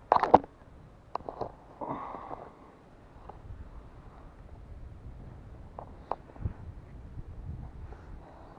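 Close handling noise: a short burst of sharp clicks and crackling at the very start, the loudest thing here, then a few scattered clicks and rustles over a faint low rumble.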